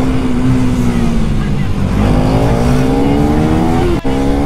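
KTM 390 Duke's single-cylinder engine pulling the bike along, its pitch easing slightly at first, then rising steadily as it accelerates from about halfway, with a quick upshift near the end. Wind rush on the helmet-mounted microphone runs underneath.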